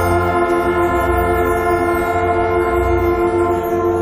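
A marching band's brass section of French horns, trumpets and tubas holding one long, loud chord.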